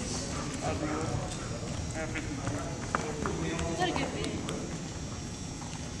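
Low murmur of several distant voices in a gym, with scattered light taps and footsteps on the wooden floor.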